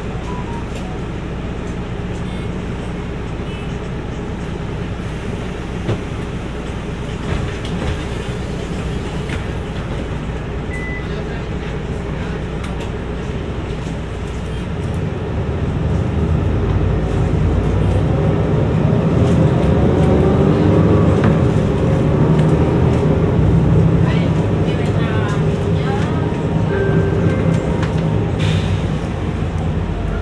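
Interior of a Mercedes-Benz city bus: the engine runs steadily while the bus stands, then about halfway through it pulls away. The engine and drivetrain noise grows louder and rises in pitch as it accelerates.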